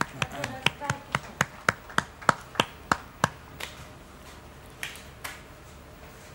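Hand claps, about four a second for some three seconds, then a few scattered claps near the end: brief applause.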